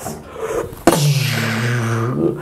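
A man's voice giving the drawn-out boxing-announcer call "Let's get ready to rumble": it starts suddenly about a second in and holds one long, low, steady note.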